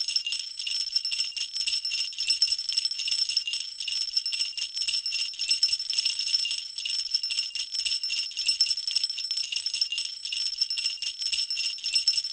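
Sleigh bells shaken steadily and without a break, a thin, high jingling with nothing lower underneath it.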